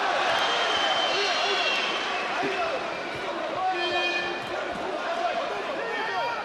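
Boxing arena crowd noise of shouting and cheering, loudest at the start and easing off, with high whistling tones twice.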